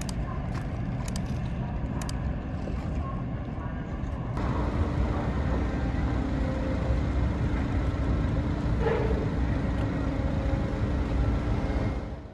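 Large car ferry's engines and propellers working as it manoeuvres alongside the quay: a dense, steady low rumble that grows louder about four seconds in, with a steady droning hum over it.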